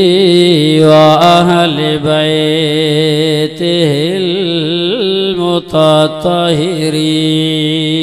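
A man's voice chanting melodically in long, wavering, ornamented held notes, breaking off briefly twice.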